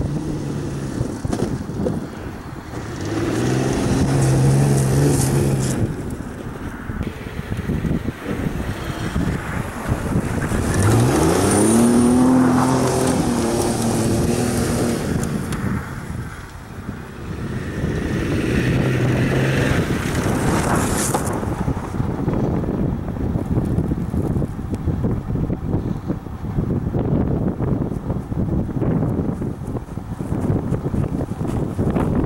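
Mercedes-Benz E320 4Matic wagon's V6 engine revving hard as the car slides in circles on a frozen dirt field. It swells loud three times as it swings close, with a rising rev about eleven seconds in.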